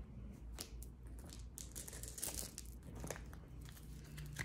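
A deck of cards being gathered off a table and shuffled by hand: faint, scattered soft rustles and light taps of card against card.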